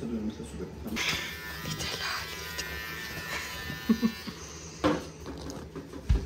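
Electric clippers buzzing steadily, starting about a second in and stopping about four and a half seconds in, shaving a dog's fur.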